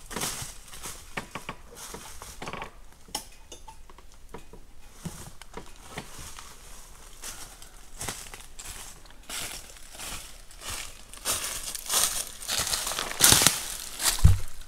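Footsteps crunching through dry leaf litter, a dense run of short crackles that grows louder near the end as the walker comes close.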